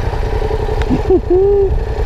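Yamaha MT-07 parallel-twin engine idling steadily through its stock exhaust, with little rumble or "ronco" to it.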